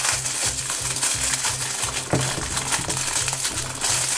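Thin clear plastic bag crinkling and crackling as it is pulled open by hand, over background music with a steady low beat.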